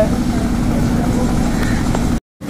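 A motor vehicle engine idling nearby: a steady low hum, with faint voices in the background.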